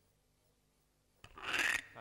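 Quiet room tone, then a short rustling scrape a little past halfway, the sound of paper or clothing being handled.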